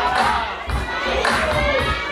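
Audience cheering and shouting, many high-pitched yells overlapping.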